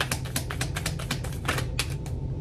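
A deck of tarot cards being shuffled by hand: a quick, irregular run of light card clicks, about ten a second.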